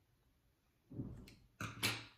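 Small metal scissors snip through a strip of t-shirt jersey about a second in. Near the end comes a louder, sharper clack of the scissors being set down on the wooden tabletop.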